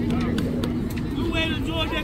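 Voices calling out across a youth baseball field, one held call in the first second and several quick high-pitched shouts in the second half, over a steady low outdoor rumble.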